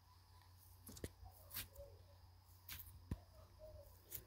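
Cloud slime being poked and pressed with fingertips: faint soft squishes with a few small clicks.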